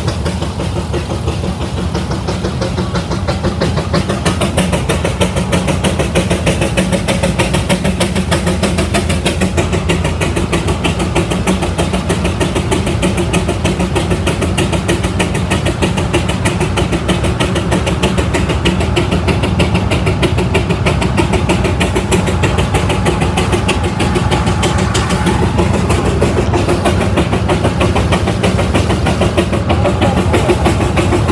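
Frick steam traction engine running steadily under load, belted to a Baker fan, with a fast, even beat.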